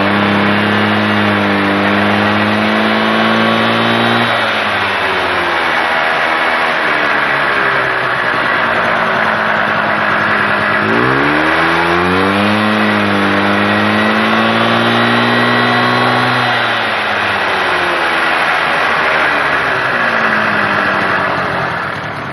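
Piaggio Ciao moped's small two-stroke engine, run on the stand through its newly fitted Boxy/Rapido variator and belt, is revved up and held high for about four seconds, then drops back. A few seconds later it is revved up again, held for about five seconds, and drops back to a low run.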